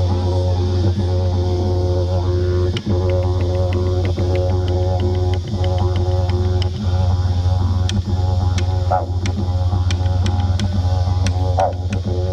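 Yidaki (didgeridoo) playing a continuous low drone on one steady pitch. The overtones shift above it and quick rhythmic pulses ride on top, with a few brief dips in the drone.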